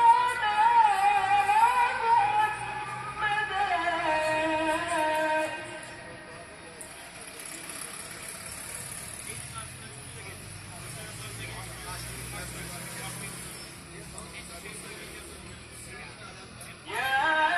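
A muezzin chanting a sela from the mosque's minaret loudspeakers: a long ornamented vocal phrase that ends about five seconds in. In the pause that follows, a car passes on the street.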